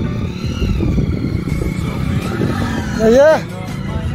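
A small motorcycle engine running at low speed as the bike rolls slowly over rough ground, a steady low rumble, with a short spoken word about three seconds in.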